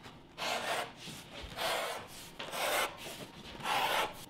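Wooden draw-style strap cutter pulled along the edge of thick vegetable-tanned leather, its blade slicing off a belt strap. Each pull is a rasping swish, about four strokes roughly a second apart.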